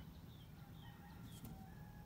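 Faint outdoor bird calls: short high chirps repeating every few tenths of a second, and a fainter held call about a second in.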